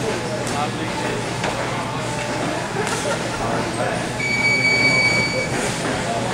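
Muay Thai sparring in a gym: indistinct background voices with a few sharp smacks of kicks and punches landing. About four seconds in, a steady high-pitched beep sounds for just over a second.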